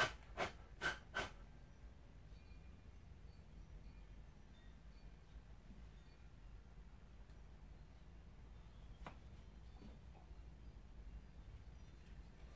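Mostly quiet room tone, broken by light clicks of small CPVC pipe fittings being handled: four in the first second or so, and one more about nine seconds in.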